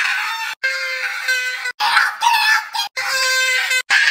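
A man screaming in mock terror at a spider, in a run of long, shrill, held screams, each cut off abruptly.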